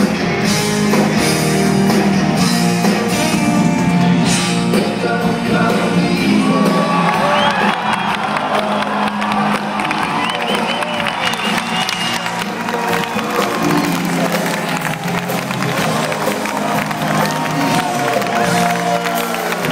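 A rock band playing live in a large hall: electric guitars, drums and keyboards, heard from among the audience, with the crowd whooping and cheering over the music.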